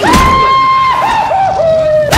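A comic scream sound effect: one loud, high-pitched yell held steady for about a second, then dropping through a few wavering falls to a lower held note.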